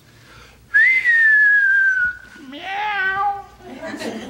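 A single whistled note, loud, that rises briefly and then slides slowly down over about a second and a half. A short, high vocal sound follows near the end.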